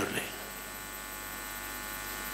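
Steady electrical mains hum with a faint hiss, unchanging, through the podium microphones. A man's voice trails off just at the start.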